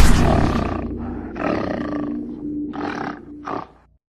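Animal roar sound effect from a logo sting, heard as three separate bursts, the last the shortest, over the fading tail of a loud hit, before the sound cuts off suddenly.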